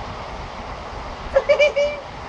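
Steady outdoor background noise with a low rumble. About one and a half seconds in comes a brief, high-pitched voice sound of about half a second.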